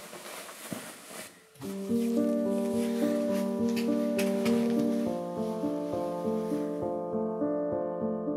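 Bedding and pillow rustling as someone settles onto a pillow. About a second and a half in, soft background music of sustained piano or keyboard chords comes in and carries on, with the rustling fading under it.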